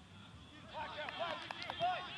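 Quiet stadium ambience during a football match. From about a second in come faint, short voices calling out, well below commentary level.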